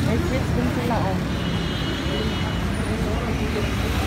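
A steady low rumble and hum of background noise, with faint people's voices mixed in.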